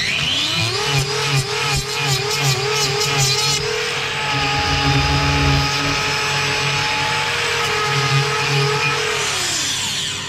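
Handheld angle grinder with a cutting disc spinning up and cutting back a cow's overgrown inner hoof claw. Its pitch wavers under the load of cutting for the first few seconds, then runs steady, and it winds down just before the end.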